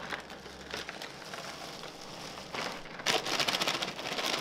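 Plastic cereal-bag liner crinkling as it is handled and pulled open, faint at first and much louder and denser for the last second.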